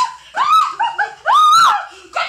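A woman's short, high-pitched cries, about five in quick succession, each rising then falling in pitch, the longest and loudest about one and a half seconds in.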